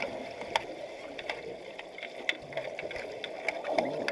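Underwater sound in a swimming pool during an underwater hockey game: a steady muffled wash of water with irregular sharp clicks and clacks from the play around the camera.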